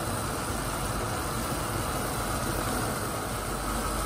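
Steady low hum and hiss from the stovetop as a pot of instant noodles cooks on a gas burner, with no separate clinks or knocks.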